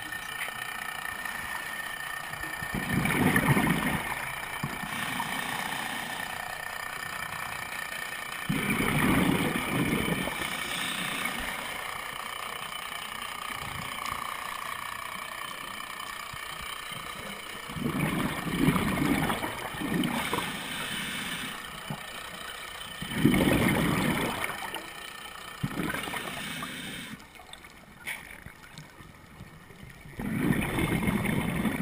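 Scuba diver breathing through a regulator underwater: four bursts of exhaled bubbles, each a second or two long and several seconds apart, with a quieter hiss between them.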